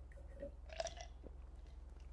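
Faint sipping and swallowing from a mug, strongest about a second in, over a low steady hum.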